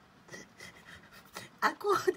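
Quiet room noise, then a person's breathy laughter starting near the end.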